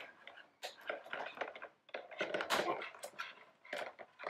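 Scissors snipping at the ties holding a plastic blister pack to a toy, with plastic packaging crinkling and rustling as it is handled: a run of short, sharp clicks and snips.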